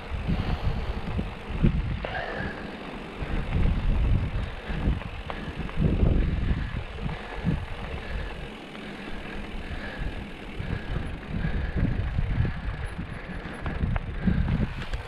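Mountain bike rolling fast down a loose gravel road, with steady tyre crunch and rattle and an uneven low rumble of wind on the camera microphone.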